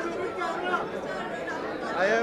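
Background chatter: many people talking at once, overlapping voices with no single clear speaker.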